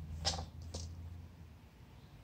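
A calico kitten biting and tearing cat grass: two short, crisp crunches, about a third of a second and three quarters of a second in. Under them a low steady hum fades out after about a second.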